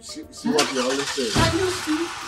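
An SUV's driver door is pulled shut with a low thump about one and a half seconds in, over the hiss of the car's engine starting and running. Film background music plays underneath.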